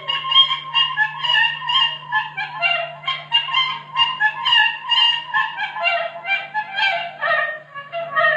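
Traditional Khowar folk music played live: a wind instrument runs through a fast line of short, quickly changing notes, over a steady low hum.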